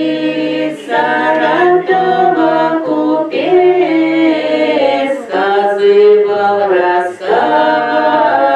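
Archival field recording of two Russian village women singing a northern folk song unaccompanied, played back in the hall. The voices move in phrases with brief breaths between them.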